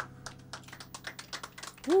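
A few people clapping, a quick irregular patter of claps, at the end of a song, with a whooping "woo" rising and falling near the end.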